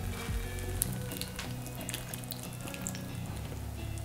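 Tomato and onion sauce sizzling in a frying pan while canned white beans and their liquid are poured in, with small clicks as beans drop into the pan. A steady low hum runs underneath.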